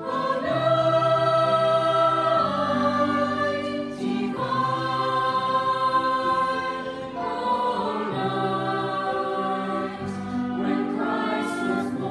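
A mixed school choir of teenage pupils singing a Christmas carol in long held notes, the chords changing every two to three seconds.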